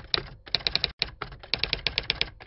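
Typing sound effect: quick key clicks, about seven a second, in short runs with brief pauses between them.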